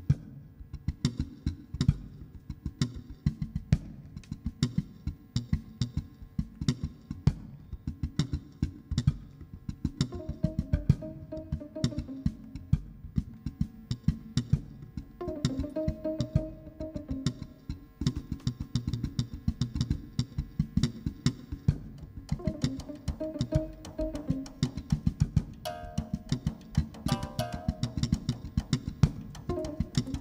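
Live jazz-funk band playing: a drum kit keeps a busy groove and an electric bass is plucked fingerstyle. A held higher note comes in and drops out several times over the groove.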